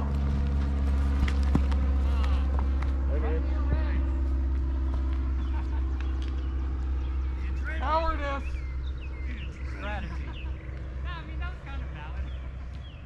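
Voices calling out across an open field over a steady low drone, with the loudest calls about two-thirds of the way in and a few shorter ones after. A couple of sharp knocks come in the first two seconds.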